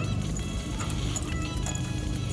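Background music with steady low notes; no distinct tool sound stands out.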